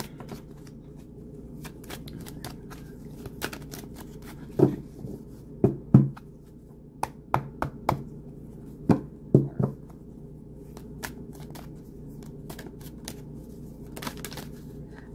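A deck of tarot cards being shuffled by hand: a string of soft, irregular card clicks and slides, with several louder taps in the middle stretch.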